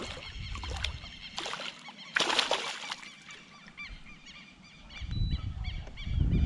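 A hooked traíra (trahira) thrashing and splashing at the water's surface beside the kayak, in several bursts, the loudest about two seconds in and lasting about a second. Faint bird chirps sound in the background.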